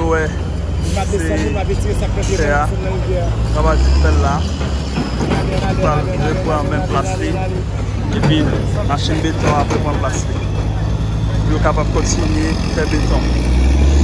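Heavy construction machinery running steadily, a tracked excavator and a concrete mixer truck, its low engine hum swelling louder about four seconds in and again near the end. Several voices talk over it.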